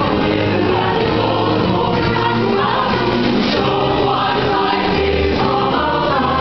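A high school show choir singing together with instrumental accompaniment and sustained bass notes, at a steady loudness throughout.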